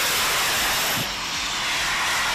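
Jet suit's small jet engines running in flight: a steady, loud jet hiss that drops slightly in level about a second in.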